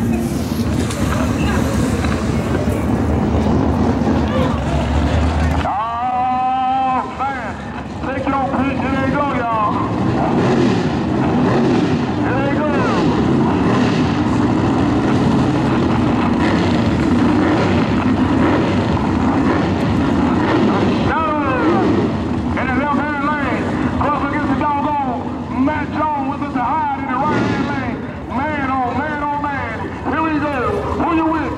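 A drag car's engine running at high revs while its rear tyres spin in a smoky burnout; the sound cuts off abruptly about six seconds in. After that, people nearby talk over a lower, steady engine sound.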